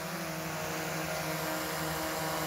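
DJI Mavic quadcopter hovering close by, its propellers giving a steady buzzing hum of several even tones.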